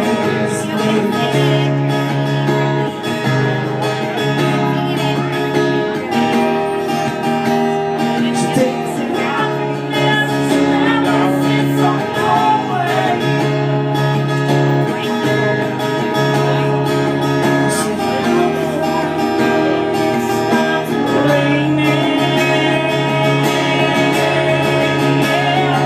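Live acoustic guitar strummed in steady chords, with a man singing in places.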